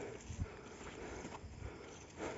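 Soft footsteps on bare rock: a few faint thuds as people walk across a stone outcrop.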